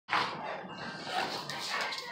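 Large dogs play-wrestling, with dog vocalisations (growling and barking), loudest at the very start.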